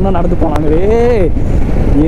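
Royal Enfield Himalayan motorcycle cruising, its engine and wind noise making a steady low rumble on the handlebar microphone. Over it a man's voice holds one long note that rises and falls, from about half a second in to just before the end.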